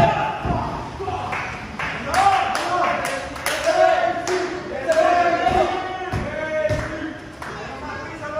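Voices yelling in long, drawn-out shouts, with several sharp thumps and slaps of bodies on a wrestling ring's canvas.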